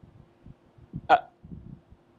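A single short, clipped vocal "uh" about a second in. Around it there is only low room noise with a faint steady hum.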